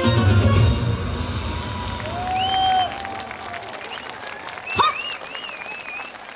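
The final chord of a yosakoi dance track ends in the first second, and the audience applauds with scattered shouted calls.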